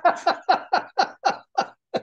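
A man laughing heartily, a run of short 'ha' pulses at about four a second that die away near the end.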